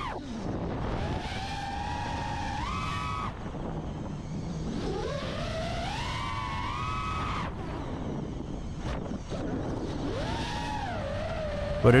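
Motors and propellers of an iFlight Nazgul 5 FPV quadcopter whining in flight. The pitch rises and falls several times as the throttle is worked, over a rush of air.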